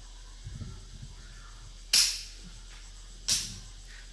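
Two sharp clacks of wooden Xiangqi pieces being set down on a cardboard board over a tiled floor, one about two seconds in and another over a second later.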